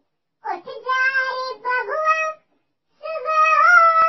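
A high-pitched, childlike voice singing two short phrases with a brief pause between them.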